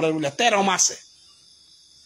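A man's voice speaking for about the first second, then, in the pause, the faint steady high-pitched chirring of crickets.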